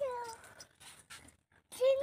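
A young child's high-pitched voice drawing out a short falling call that trails off, followed by a near-quiet pause with a few faint ticks.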